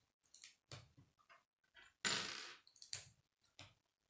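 Plastic K'nex rods and connectors clicking and clattering as they are handled and snapped together, with a louder clatter about halfway through.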